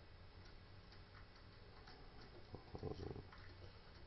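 Faint, irregular ticks of a half-diamond pick lifting the pin stacks of a five-pin deadbolt cylinder held under tension, with a little louder handling noise around three seconds in.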